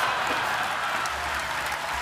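Audience applauding: a steady wash of clapping.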